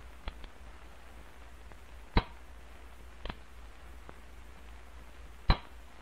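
Pistol being dry-fired ('snapping in'): sharp metallic clicks of the action with no shot. Four clicks: a faint one just after the start, a loud one about two seconds in, a softer one about three seconds in and another loud one about five and a half seconds in.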